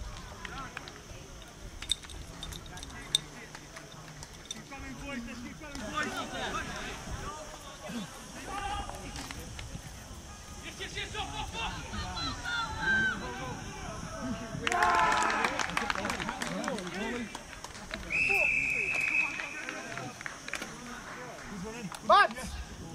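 Scattered shouts and calls from players and spectators at a rugby league match, with a louder burst of shouting about fifteen seconds in. About eighteen seconds in comes a single steady referee's whistle blast lasting about a second and a half.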